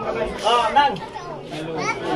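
Children's voices calling out over the chatter of a small crowd, with short high-pitched calls about half a second in and again near the end.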